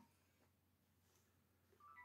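Near silence: room tone, with a faint, brief electronic beep near the end.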